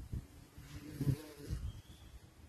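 A flying insect buzzing near the microphone, the buzz swelling and fading unevenly.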